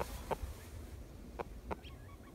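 Rooster giving three short clucks, about a third of a second in and twice near the end, over a low steady rumble.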